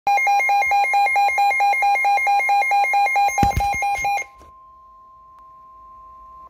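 A weather radio receiver's alarm beeping rapidly, about six beeps a second, over the steady 1050 Hz NOAA Weather Radio warning tone that marks a warning broadcast. There is a thump about three and a half seconds in. The beeping then stops and the warning tone carries on alone, much quieter.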